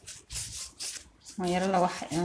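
Rubber-gloved hands rolling a log of dough back and forth on a wooden tabletop, a soft rough rubbing and scuffing. About one and a half seconds in, a voice holding long notes comes in over it.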